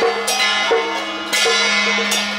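Hakka traditional instrumental ensemble playing: small hand cymbals clash three times, at the start, about halfway and near the end, each ringing on, over a steady low held note and a stepping melody.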